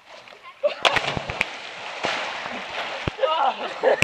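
Two people plunging into a river: a heavy splash about a second in, then a couple of seconds of churning, rushing water, with voices calling out near the end.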